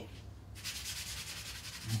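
A sponge scrubbing a dish in gloved hands: a run of quick, even rubbing strokes that starts about half a second in.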